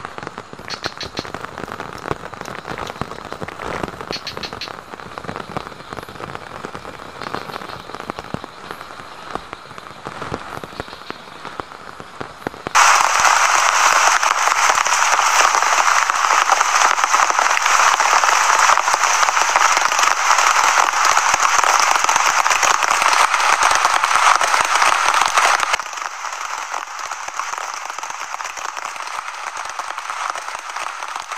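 Steady rain with a small campfire crackling. About 13 seconds in, the sound jumps abruptly to loud, dense rain beating on a clear plastic sheet, then drops to quieter, steady rain on the plastic a few seconds before the end.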